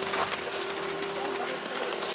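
Footsteps walking on pavement outdoors, with a steady faint hum held underneath.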